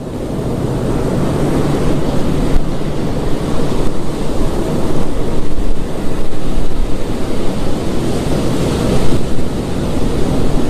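Loud, steady rushing noise like wind, swelling in over the first two seconds, with a faint low hum underneath.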